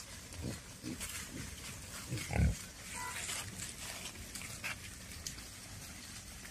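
A herd of wild boar grunting: a string of short, low grunts, the loudest about two and a half seconds in, over a rustle of dry leaves.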